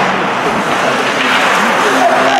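Ice hockey arena ambience during play: a steady rushing noise with scattered faint voices and calls.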